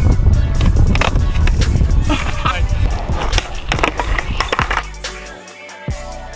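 Skateboard wheels rolling on rough concrete, a loud low rumble with several sharp clacks of the board. The rumble fades out near the end, leaving music.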